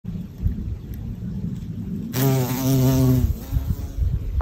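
Bumblebee buzzing in flight, a steady hum that starts about halfway through and lasts about a second before fading. A low rumble fills the first half.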